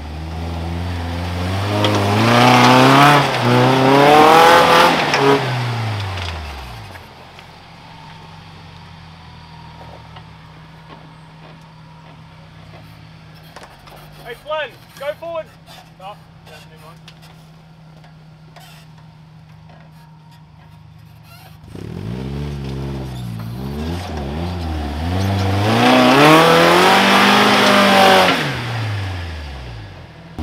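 Suzuki Vitara 4WD engine revving up and down under load as it claws up a steep, slippery, rutted track, followed by a long stretch of low, steady idling. About 22 seconds in, hard revving with the same rise and fall starts again suddenly and then cuts off near the end.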